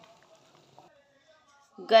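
Near quiet, with only faint soft background sounds. A woman's voice begins near the end.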